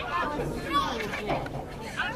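Several voices calling out and chattering at once, with no clear words.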